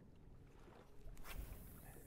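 Faint open-water noise on a fishing boat, with a brief swish and hiss a little over a second in as a spinning rod is cast and line pays out.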